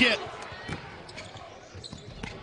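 A basketball dribbled on a hardwood court as it is pushed up the floor: a few separate sharp bounces.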